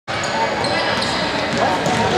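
Basketball game in a large indoor gym: a ball bouncing on the hardwood court over a steady din of players' and spectators' voices.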